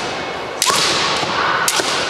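Bamboo shinai clashing in a kendo bout: sharp cracks of sword striking sword, and about half a second in a long, high-pitched kiai shout from a fencer, with more shinai cracks near the end.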